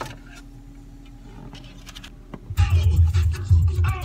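Car CD player: a few faint clicks while the disc loads, then dance music with heavy bass starts about two and a half seconds in. The disc is skipping.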